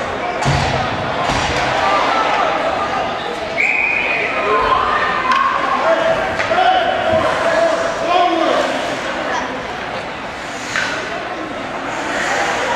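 Ice hockey rink ambience: indistinct voices of players and spectators, with sharp knocks of sticks and puck against the ice and boards, echoing in a large arena.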